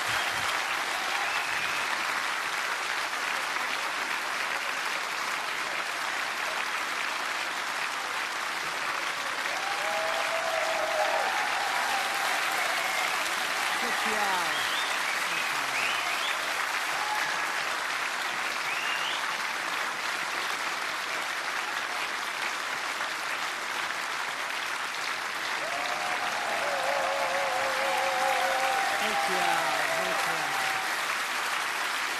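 A large theatre audience applauding steadily, with a few cheers and whistles rising above the clapping.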